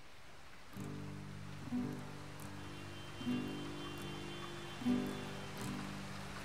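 Quiet instrumental opening of an indie-pop song: after a moment of faint hiss, soft sustained chords come in and change about every second and a half.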